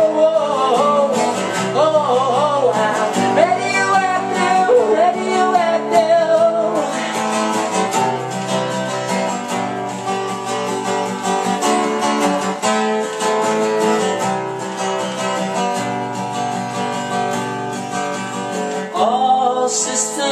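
Acoustic guitar strummed steadily with a man singing over it; the voice carries the first seven seconds or so, drops out while the guitar plays alone, and comes back near the end.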